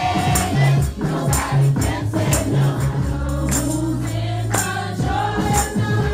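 Children's gospel choir singing over a steady bass line, with a tambourine struck on the beat about twice a second.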